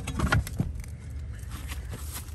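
Steady low hum of a condenser fan motor running while the compressor is unplugged, with a few clicks and rattles about half a second in.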